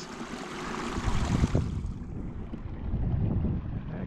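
Wind buffeting the microphone over the steady rush of a shallow creek running through the breach in a beaver dam.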